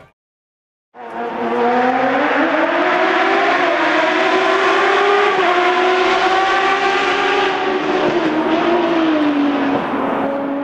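A racing car engine held at high revs, its pitch wavering slightly but otherwise steady, starting abruptly about a second in after a moment of silence.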